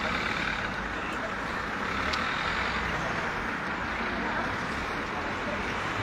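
Steady street noise with a vehicle running, and faint voices in the background.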